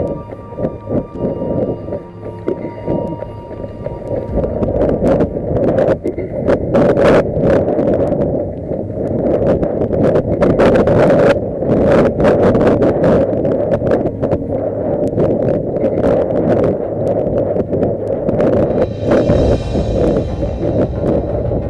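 Wind buffeting the microphone of a camera carried by a running marathoner, a steady noisy rumble broken by irregular knocks from the camera jostling, with music underneath.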